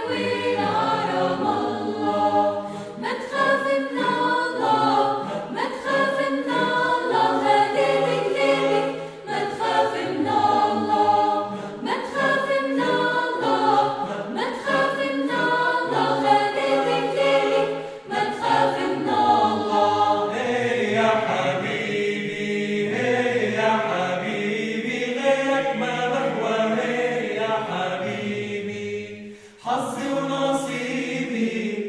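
A mixed choir of men's and women's voices singing unaccompanied in several parts, with a brief break just before the end as the phrase ends and the singing starts again.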